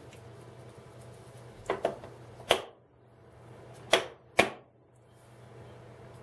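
About five short, sharp clicks of small metal tool pieces, a bit adapter or socket, being handled and set into the moulded plastic tool case: a quick pair, then three single clicks spaced about a second or more apart.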